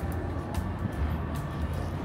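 City street ambience: a steady low traffic rumble with music playing, and scattered short clicks.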